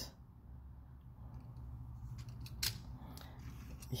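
A few faint, sharp clicks of small die-cast toy cars being handled and picked up off a workbench, over a low steady hum.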